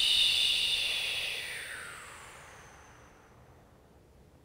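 A woman's long, slow exhale through the mouth: a breathy hiss that fades away over about three seconds. It is the release of a deep breath taken in through the nose and held with a root lock in a yoga breathing exercise.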